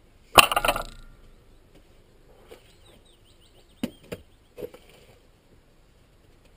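A sharp clank about half a second in with a short rattle after it, then a few lighter knocks around the four-second mark, from hand tools being worked while cutting peat.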